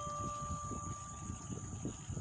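Wind buffeting a phone's microphone on a moving bicycle: an uneven low rumble. A single chime-like note rings out and fades away near the end.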